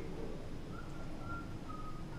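A draw on an e-cigarette: a faint, thin whistle that comes and goes in short spells, over low room hum.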